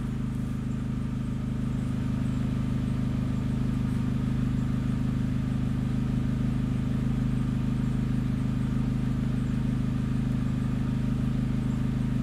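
2003 Opel Corsa C petrol engine idling steadily, heard from inside the cabin as an even low hum.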